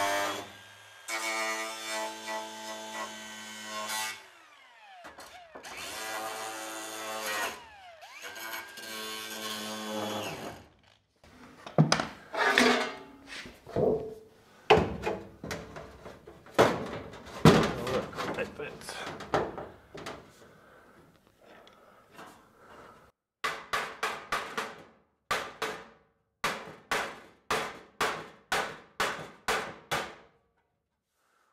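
Angle grinder working on sheet steel in three bursts over about ten seconds, its whine falling away as it spins down between them. Then come scattered sharp metallic knocks as the steel panel is handled, and in the last seven seconds a regular run of knocks, about two or three a second.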